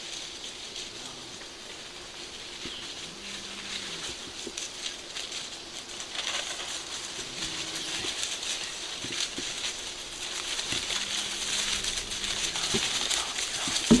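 Armadillo scurrying through dry fallen leaves, a continuous crackling rustle of leaf litter with small snaps, growing louder from about six seconds in as the animal comes closer.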